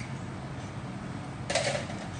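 A short handling noise of makeup items being picked up, about one and a half seconds in, over a steady low hum.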